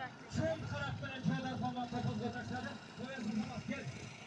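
Several men's voices talking over one another close by, with a low murmur of the crowd behind.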